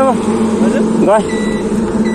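Short bits of men's voices over a steady engine hum from an idling vehicle, with a brief thin beep in the middle.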